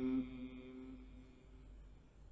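The tail of a Quran reciter's long held note, one steady tone with a reverberant echo dying away over about a second and a half, leaving faint room tone.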